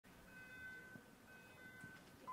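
Near silence, with faint start-gate beeps: two long, high, steady tones, one after the other.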